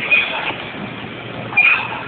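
Repetitions on a plate-loaded lever pulldown machine, with a short high-pitched squeal-like sound on each rep, about a second and a half apart, over gym noise.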